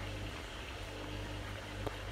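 Low-level steady background hum and hiss, with one small click near the end.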